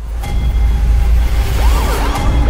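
Trailer sound design: a loud whooshing swell builds over a deep bass drone, and wailing up-and-down glides come in about a second and a half in.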